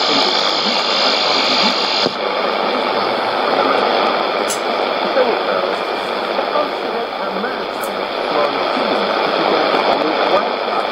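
Voice of Nigeria's English shortwave broadcast on 15120 kHz, heard through a Sony ICF-2001D receiver's speaker as a weak signal: indistinct speech buried in heavy static hiss. About two seconds in a click comes as the receiver is fine-tuned, and the highest hiss drops away.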